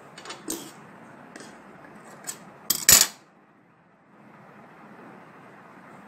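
Metal dressmaking shears set down on a wooden cutting table with a sharp metallic clack about three seconds in, after a few lighter clicks of handling.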